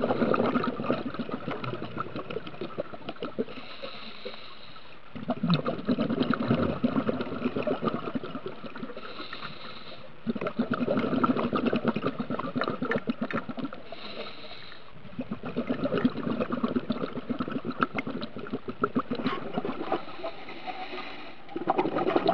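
Scuba diver breathing through a regulator underwater: a brief hiss on each inhale, then a few seconds of crackling exhaust bubbles on each exhale, the cycle repeating about every five seconds.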